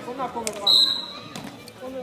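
A short, steady blast of a referee's whistle, the loudest sound here, about two-thirds of a second in. Just before it a ball bounces once on the hard court, and players' voices go on around it.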